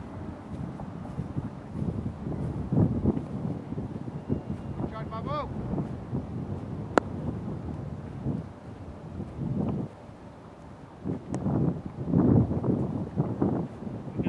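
Wind buffeting the microphone, with distant shouted voices of players calling across the field and one sharp crack about seven seconds in.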